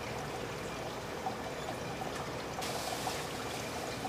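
Seawater running and trickling steadily into laboratory aquarium tanks, with a brighter hiss joining about two and a half seconds in.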